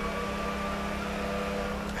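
Steady low machine hum with faint, even tones above it, unchanging throughout.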